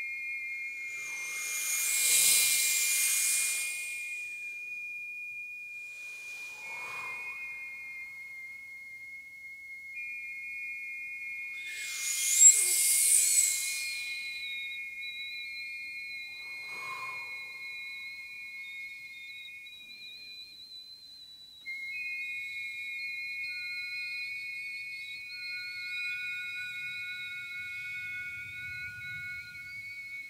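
A four-woman vocal ensemble holds several high, pure, whistle-like tones that overlap and sustain steadily. Two loud breathy hissing rushes come in about two seconds in and again around twelve seconds, with two fainter, shorter ones between.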